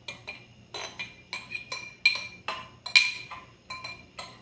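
Metal spoon clinking against ceramic bowls and cups during a meal: about a dozen short, irregular clinks, each with a brief high ring, the loudest about three seconds in.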